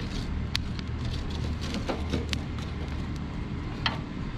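A few sharp clicks of charcoal briquettes knocking together as they are pushed around the grill's firebox with a stick, over a steady low rumble.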